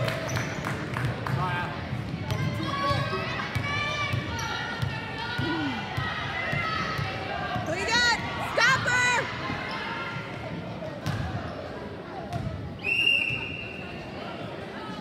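A basketball bouncing and dribbling on a hardwood gym floor, with sneakers squeaking sharply around the middle, over the murmur of spectators in a large echoing gym. A short shrill tone sounds near the end.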